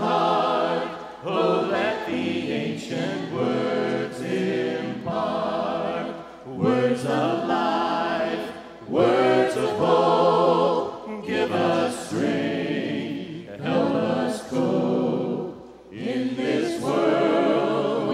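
Mixed vocal ensemble of men and women singing a slow hymn in harmony, unaccompanied, through handheld microphones, with short breaths between phrases.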